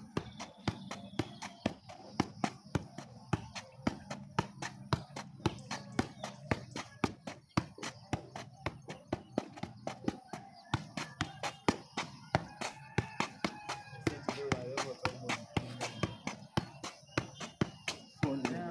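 A football being juggled on the feet: a rapid, continuous run of sharp taps as the ball is kicked back up, about three or four a second.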